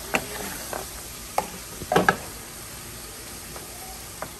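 Shredded beef frying in a nonstick skillet with a steady sizzle while the remaining liquid is cooked off, and a wooden spatula scraping and knocking against the pan several times, loudest about two seconds in.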